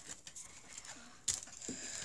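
Light handling noise of a stack of Pokémon trading cards being picked up and sorted, with one sharp click about two-thirds of the way in.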